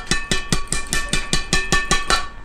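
Badminton racket string bed, Maxbolt MBS 90 string at 30 lbs, slapped rapidly against an open palm. The taps come about eight a second, each leaving a short ringing ping at the same pitch, the sound players check to judge string tension.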